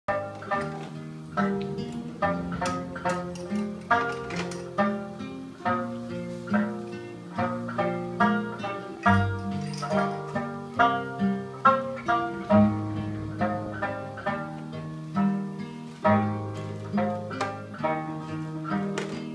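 Live instrumental acoustic guitar music: plucked notes in a steady rhythm over held low notes.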